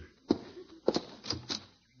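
Radio-play sound effect of a door being opened: four sharp clicks and knocks within about a second and a half, the first two the loudest.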